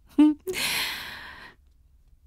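A woman makes a brief voiced sound, then gives a long breathy sigh that fades away over about a second.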